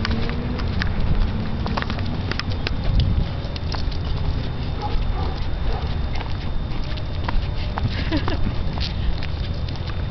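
A miniature pinscher's claws clicking irregularly on a concrete sidewalk as it trots along on a leash, over a steady low rumble.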